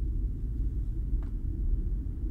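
Steady low rumbling drone of a sci-fi ambience bed, with a faint click about a second in.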